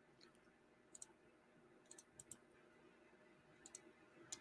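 Near silence broken by a few faint computer mouse clicks, scattered singly and in pairs.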